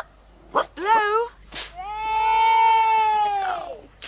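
A voice holding one long high note for about a second and a half, its pitch falling away at the end, after a few short rising and falling syllables.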